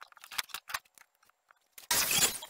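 Light wooden clicks and knocks as hands work a slatted wooden chest, then a louder scraping clatter near the end.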